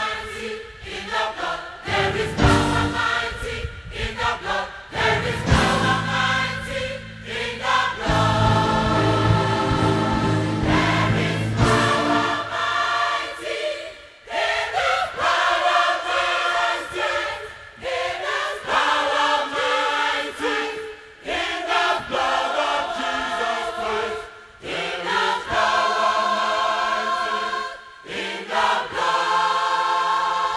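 Church gospel choir singing in harmony with long held chords. The low end is full for about the first twelve seconds, then thins out.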